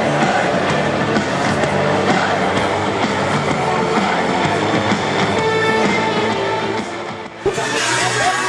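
Background music playing steadily. It dips briefly and cuts to a different piece near the end.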